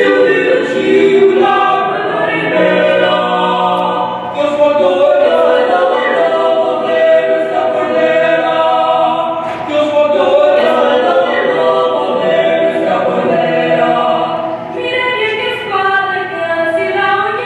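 A mixed vocal quartet of two female and two male voices singing a cappella in harmony, with short breaks between phrases.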